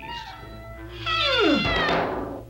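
A cartoon sound effect: a pitched sound that slides steeply down over about a second, over background music.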